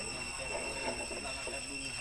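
Voices of people talking faintly in the background over a steady high-pitched whine.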